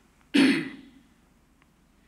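A man clears his throat with one short cough into the pulpit microphone, hand over his mouth.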